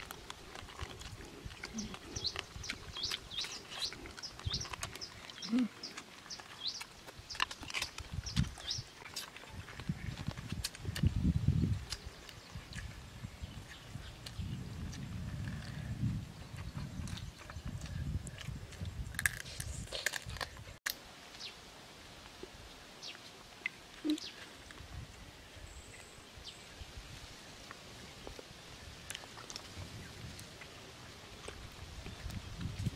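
People eating rice with their hands: wet chewing and lip-smacking, with many short clicks, and a short louder rumble about eleven seconds in.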